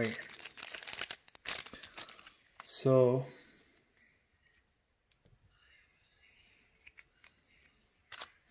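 Plastic shrink-wrap on a pack of trading cards crinkling and tearing as it is pulled open, for about the first two and a half seconds. A short hum from a voice comes about three seconds in, then only faint rustles and ticks from the cards being handled.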